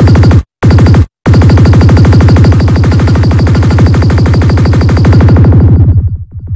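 Dark psytrance track: a fast rolling bass line of rapid, even pulses under dense synth layers, very loud. In the first second and a half it cuts to dead silence twice for an instant, then runs on, and near the end the highs are filtered away.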